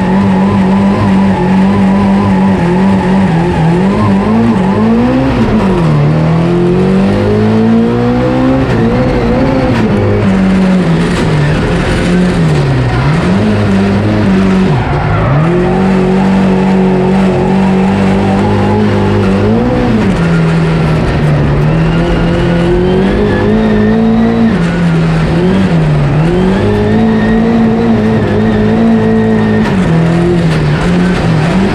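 Race-prepared Fiat 133 jokkis car's small four-cylinder engine heard from inside the stripped cabin, driven hard: the revs rise, then drop sharply and climb again again and again through lifts and gear changes. A thinner, higher wavering tone rides over it in the second half.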